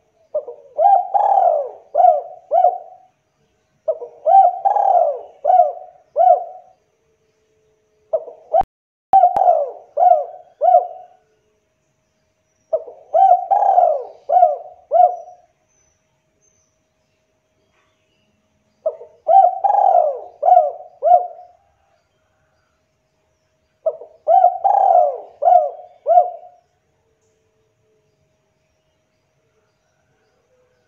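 Spotted dove cooing: six phrases a few seconds apart, each a quick run of four or five short coos.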